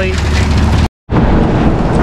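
Steady low drone of a John Deere 4240 tractor's diesel engine running the silage feeding system as corn silage trickles from the silo unloader. It cuts off abruptly just under a second in, and a rougher, noisier background without the low hum follows.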